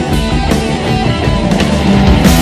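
Heavy metal music with electric guitar playing.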